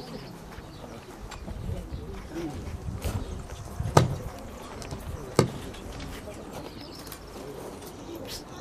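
Outdoor lull with a low rumble, a faint bird call and two sharp knocks, about four and five and a half seconds in.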